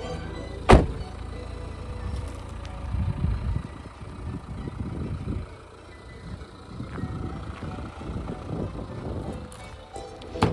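A car door shut with a single loud thunk just under a second in, followed by irregular crunching footsteps on gravel, with faint music underneath.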